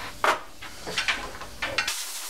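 Carburetor float bowl rubbed in circles on 80-grit sandpaper laid on a flat stainless bench, a few quick scraping strokes as its gasket face is lapped flat. Near the end, a hissing blast of compressed air from a blow gun starts up.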